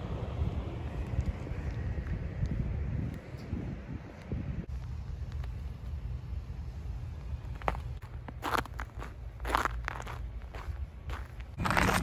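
Footsteps crunching in fresh snow over a steady low rumble on the microphone; the crunches become sharper and more distinct in the second half.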